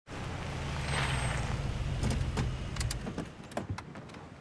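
Police car's engine running with a steady low rumble, a rush of noise about a second in, and scattered light clicks in the last two seconds as the rumble fades.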